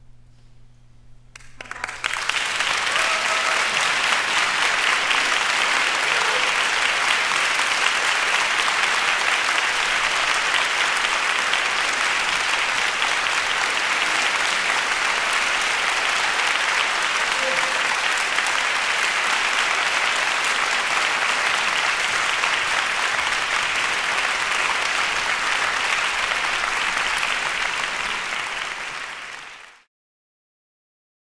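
Concert audience applauding at the close of a performance. The applause starts about two seconds in after a quiet moment, holds steady and dense, and fades out at the very end.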